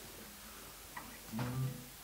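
Guitar handled between songs: a faint click about a second in, then a short low note just after the middle.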